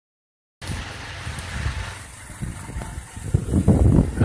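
Wind buffeting the camera microphone outdoors, an uneven low rumble that starts about half a second in and swells in stronger gusts near the end.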